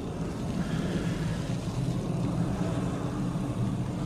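Water spraying steadily from a garden hose through a hose-end foam sprayer onto a car's soapy body, over a steady low rumble.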